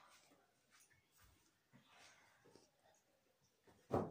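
Faint swallowing and breathing of people gulping cola from glasses as fast as they can, with scattered soft sounds and a brief louder sound near the end.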